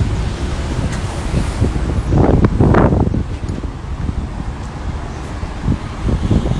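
Wind buffeting a phone's microphone: a steady low rumble, with a brief louder swell of noise between about two and three seconds in.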